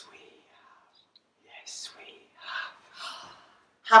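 Quiet whispered speech in a few short phrases, followed by ordinary loud speech starting right at the end.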